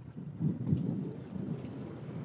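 Wind buffeting the microphone on an open boat: an uneven low rumble, strongest about half a second in.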